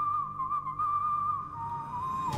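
Whistling from a film soundtrack: one held note with a slight wobble, stepping down to a slightly lower note about one and a half seconds in.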